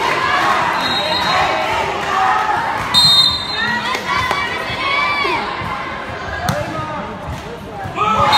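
Spectators chattering and shouting around a volleyball court, with a short, high whistle blast about three seconds in and a few thuds of the volleyball bouncing and being struck.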